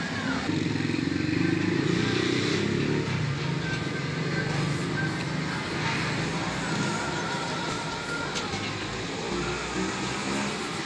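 A steady engine-like rumble runs throughout, with a sharp click near the end.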